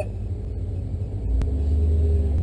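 2009 Ford Mustang GT's 4.6-litre V8 idling while the car stands still, heard from inside the cabin; the low idle note grows a little stronger about a second in, with a single sharp click shortly after.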